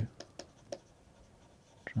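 Stylus tapping and scratching on a tablet screen while handwriting, a few faint irregular clicks and short scrapes.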